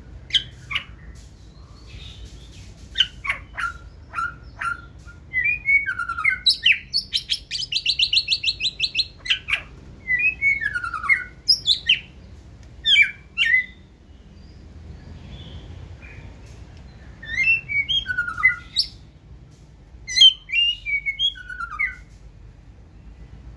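White-rumped shama singing: phrases of varied whistled notes sweeping up and down, including a fast run of rapid repeated notes a few seconds in, with short pauses between phrases.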